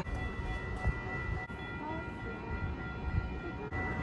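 A Calgary C-Train light-rail train approaching the platform: a steady low rumble with a thin, steady high whine over it.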